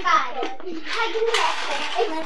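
Young children's high-pitched voices calling out and chattering.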